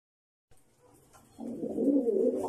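A flock of feral pigeons cooing. The low cooing starts about one and a half seconds in, after a near-silent start, and grows louder.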